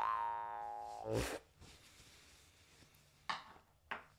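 Jaw harp's last note fading out, its buzzing drone with many overtones dying away over about the first second, cut off by a short noisy rush. Then near quiet, with two soft clicks near the end.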